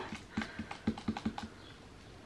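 A quick, irregular run of about ten faint light clicks or taps over roughly a second, then quiet.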